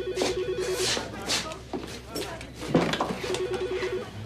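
Desk telephone ringing with an electronic warbling trill, two alternating pitches flipping rapidly. One ring ends about a second in and the next ring starts near the end, signalling an incoming call.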